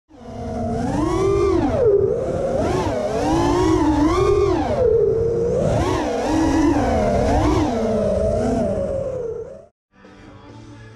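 FPV freestyle quadcopter's brushless motors whining, the pitch rising and falling constantly with the throttle, over a rushing noise from the props and air. The sound cuts off suddenly near the end.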